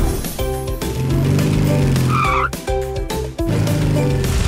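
Cartoon vehicle sound effects over light background music: an engine sound swells and fades, with a short high squeal about two seconds in.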